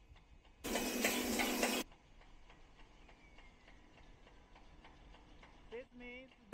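Faint ticking from the running cap inspection machinery. Near the start it is broken by a loud, even hiss lasting about a second.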